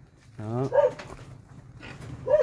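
A goat bleats once, a short call rising in pitch.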